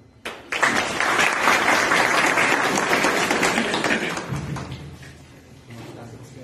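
An audience applauding: a burst of clapping that starts suddenly about half a second in, holds loud for a few seconds and fades away by about five seconds in.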